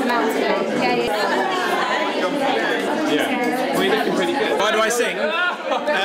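Many people chatting at once: a babble of overlapping conversations, no single voice standing out.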